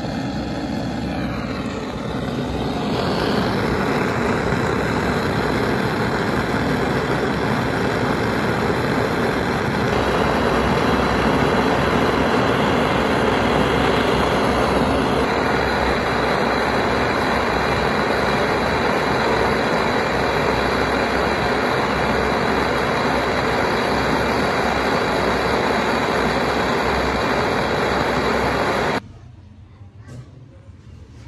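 Gas torch flame burning steadily with a loud rushing noise as it melts scraps of gold into a bead. The noise steps up about two seconds in and stops suddenly near the end.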